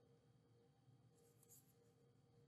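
Near silence, with a few faint scratches of a stylus writing on a tablet screen about a second in.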